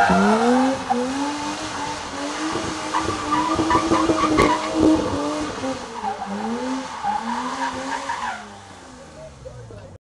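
BMW E30 drifting: its engine revs rise and fall over and over while the tyres squeal as the car slides. A burst of rapid knocking sits in the middle, and the sound drops away near the end.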